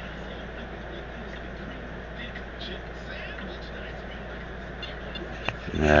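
Steady hiss with a low hum underneath, and a single sharp click about five and a half seconds in.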